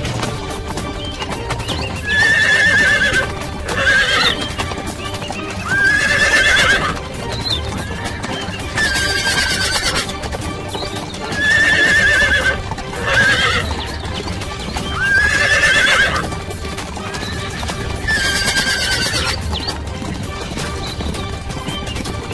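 Horse whinnying again and again, about eight high, wavering calls each lasting up to a second, over background music.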